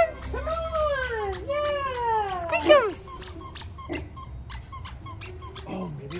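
A dog whining: four high whines in the first three seconds, the middle two drawn out and falling in pitch, followed by faint clicks.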